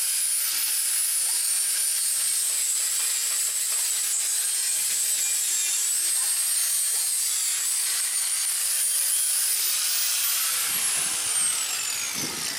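Electric angle grinder grinding steel, a steady high whine over a gritty hiss, taking the burrs off a freshly cut edge of the steel gate frame. Near the end it is switched off and the whine falls as the disc spins down.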